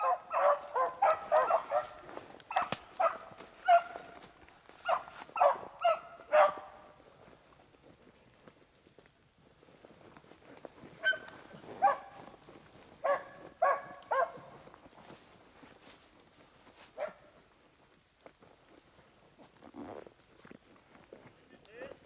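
Beagles baying as they run a rabbit on scent: quick strings of short, pitched barks. A run of barks comes first, then a lull, another flurry about eleven seconds in, and a few single calls near the end.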